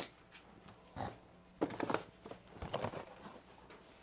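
A man choked up with tears, weeping quietly: a few short sniffs and catching, unsteady breaths.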